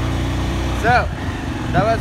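Motor vehicle engine running with a steady low hum while driving along a street, with short voice sounds about a second in and near the end.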